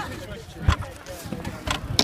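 Two sharp knocks about a second apart, with faint background noise.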